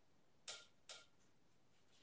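Two light taps about half a second apart, made as a small container of baking powder is tapped to knock more powder into a cup of paint mixture.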